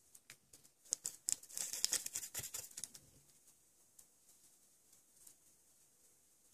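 Small paintbrush scrubbing dry pastel colour onto a miniature clay disc: a quick run of soft, scratchy strokes between about one and three seconds in, then only a few faint ticks.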